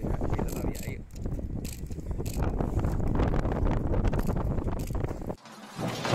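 Wind buffeting the microphone, with scattered sharp clicks and taps over it. Near the end it cuts off and a swoosh sound effect starts.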